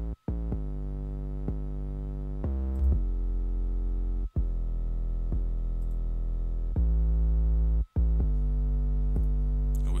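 Synth bass line from a beat played back on its own, with no drums: long held notes with a heavy low end, the pitch changing about every second, with a few short breaks between notes. It is heard dry, with the bass-booster plugin switched off.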